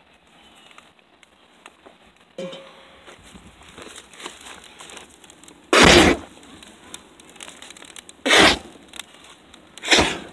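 Homemade fuel igniting: two loud whooshes of flame flaring up, the first about six seconds in and the second about two and a half seconds later.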